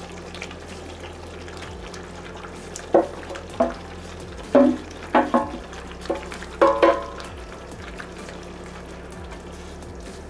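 Vegetables and tofu stirred into a skillet of bubbling curry sauce with a wooden spatula: the sauce simmers while the spatula gives about half a dozen short scrapes and knocks against the pan, from about three seconds in, over a steady low hum.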